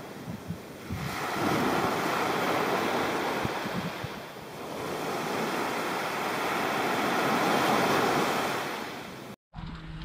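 Small waves washing up a sandy beach, the rush of water swelling twice and falling back. The sound cuts off abruptly near the end.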